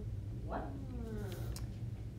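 A faint, distant voice says "one" once, with the pitch falling, answering the quadrant question.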